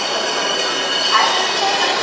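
Background hubbub of an exhibition tent: distant voices over a steady mechanical noise with a faint high whine.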